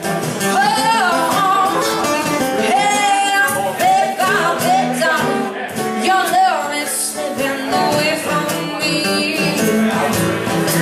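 Live acoustic music: a woman singing at a microphone over two strummed acoustic guitars.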